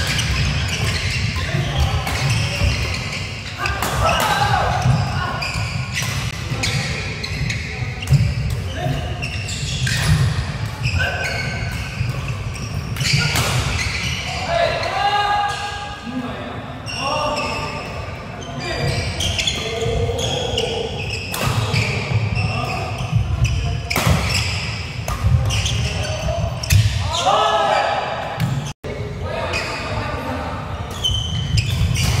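Badminton rally on an indoor wooden court: repeated sharp cracks of rackets striking the shuttlecock, with footsteps and shoes squeaking on the floor, echoing in a large hall, and voices in the background.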